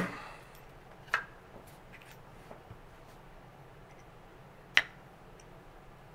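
A few light clicks and ticks of a brass .38 Special case and the Lee Loader's metal decapping parts being handled on a wooden block: one sharp click about a second in, a couple of faint ticks, and another sharp click near the end. The tail of the last hammer tap fades out at the start.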